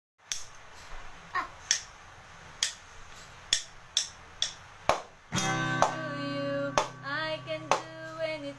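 Drumsticks striking a toy drum in sharp, separate hits, about one or two a second. About five seconds in, a song with singing starts playing, and the hits go on over it.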